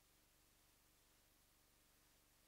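Near silence: only a faint steady hiss with a low hum from the recording chain. The Rode lavalier plugged into the cheap wireless kit passes no voice.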